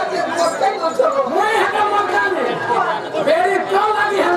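Speech only: several voices talking over one another, with no music playing.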